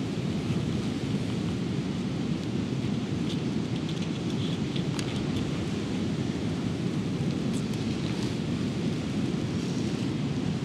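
Strong wind buffeting the microphone: a steady low rumble, with a few faint ticks in the middle.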